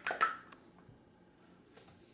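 A single sharp click, then a brief hiss-like rustle near the end, as glass jars and small plastic spice bottles are handled on a kitchen counter.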